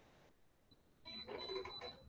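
Near silence, then about a second in a faint, garbled voice with a thin, steady high whine, lasting under a second, typical of a student's reply coming through a poor online-call connection.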